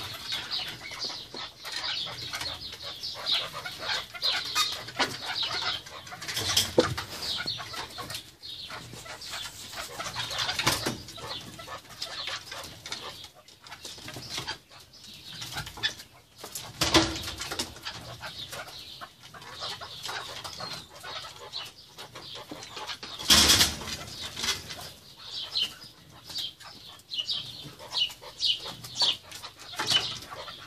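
Keklik partridges (Alectoris) calling with rapidly repeated short notes while a male courts a hen, with several loud bursts of wing flapping.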